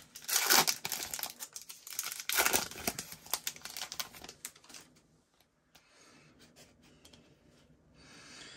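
A foil Panini Prizm Football trading-card pack being torn open and crinkled by hand, in several loud bursts of crackling over the first five seconds. After that only faint rustling is left.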